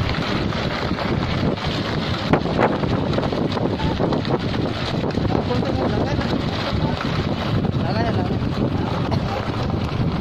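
Loud, steady wind noise rushing over a phone's microphone, with a low rumble underneath.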